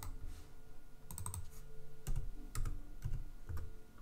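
Computer keyboard typing: scattered, irregular keystrokes, some in quick pairs, as values are entered into a design program's position fields.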